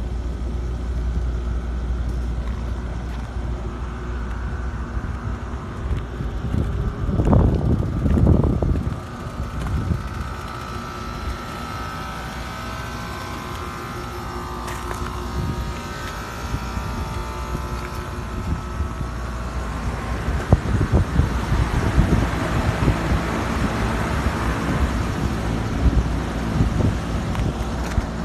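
Carrier rooftop packaged AC unit running: its condenser fans and compressor give a steady low hum, running normally in cold weather with its factory fan cycle switches reconnected. A louder rumble rises about seven to nine seconds in, and the sound turns rougher in the last third.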